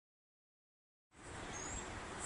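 Dead silence for about a second at an edit, then faint outdoor background noise with one brief high chirp.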